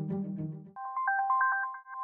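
Low-pitched background music stops abruptly about a third of the way in. A quick electronic jingle of short beeps follows, stepping between a few pitches like a phone ringtone.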